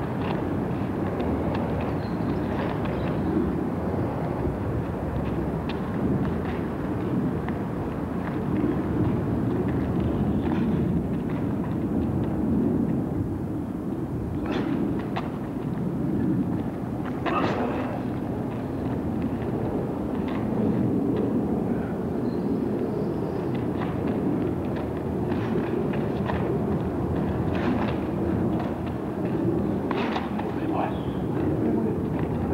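Steady low rumbling noise, typical of wind on an outdoor camcorder microphone, with a few brief sharp sounds, the clearest about 14 and 17 seconds in.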